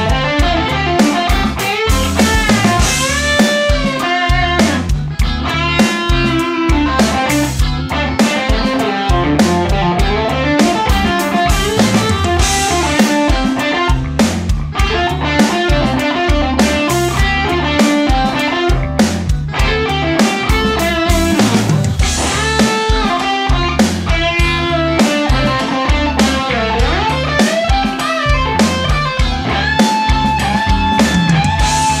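Electric guitar playing a lead solo, mostly in D minor pentatonic with bent notes, over a backing jam track with drums that vamps between D minor 7 and A7.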